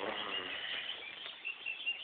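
Birds chirping: a few short, high chirps in the second half, over rustling outdoor background noise.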